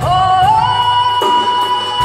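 Live Japanese ensemble music: a held high melody note slides upward about half a second in and then holds over a steady low drone. Light cymbal ticks keep a beat underneath.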